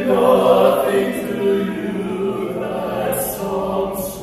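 Four men singing together in harmony, holding long chords that shift every second or so.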